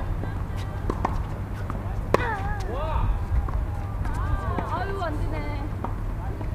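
Tennis balls struck and bouncing on a hard court, a few sharp knocks, the loudest about two seconds in. Players' voices call out over a steady low background rumble.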